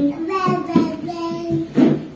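A young child's wordless sing-song voice, holding one long note about the middle, with a short loud vocal burst near the end.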